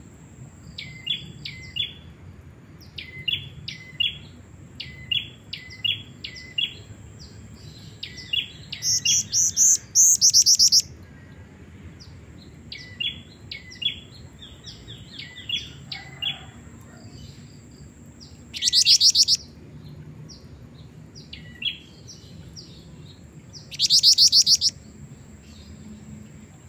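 Female black-winged flycatcher-shrike (jingjing batu) calling: short chirps, mostly in pairs, repeated about once a second, broken three times by a loud, fast trill lasting about a second.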